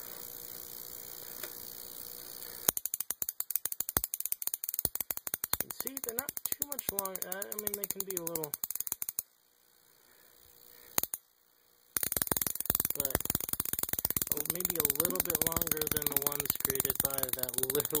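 High-voltage sparks snapping in a fast, crackling stream from the output of a Cockcroft-Walton voltage multiplier fed by a 7.5 kV neon sign transformer. The crackle starts a few seconds in, stops for about three seconds with a single snap in the gap, then starts again.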